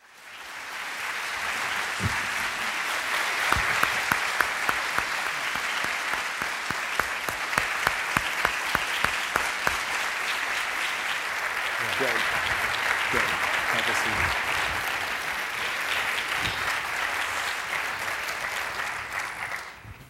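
A large audience applauding steadily, many hands clapping at once. The applause fades in at the start and cuts off suddenly near the end.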